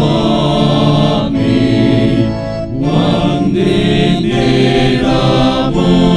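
Men's voices singing a Tamil hymn in unison, held note by note, accompanied by an electronic keyboard, with a brief breath-break between lines just before the middle.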